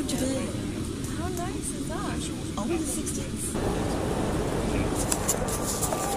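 Indistinct background voices over a steady low rumble. About halfway through, the sound abruptly changes to a broader, noisier hiss.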